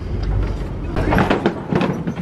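Open-air safari truck driving along with a low rumble, followed by knocks and rattles as it rolls onto a bridge; the bridge does not creak.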